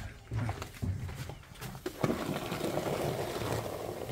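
Fresh cow's milk poured from a bucket into a plastic pail, a steady splashing rush that starts suddenly about two seconds in. Before it come low, indistinct sounds.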